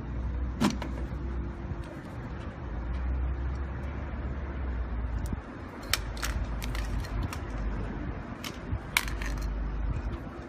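Metal alligator clips on test leads clicking and clacking as they are handled, a few sharp clicks scattered through, over a steady low rumble.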